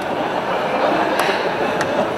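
A lecture audience laughing together in a hall, a steady wash of laughter with a couple of brief sharp clicks.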